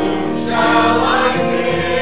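Mixed church choir of men's and women's voices singing together, holding long notes, growing a little louder just after the start.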